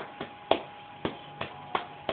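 Beer being chugged from an upended glass bottle: a string of short, sharp gulps about every third of a second, over a faint steady tone.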